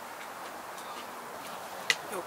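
Small clicks of eating and handling food at a table: a few faint ticks, then one sharp click near the end as a hand reaches to a wooden serving board, over a steady low hiss.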